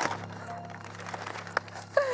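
Brown kraft paper crinkling and rustling as a cardboard gift box is unwrapped by hand, with sharp crackles at the start and about one and a half seconds in. Soft background music plays underneath.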